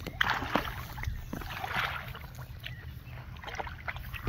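A large blue catfish thrashing at the surface of shallow water, splashing in two bursts: one just after the start and a longer one around two seconds in, over a low steady rumble.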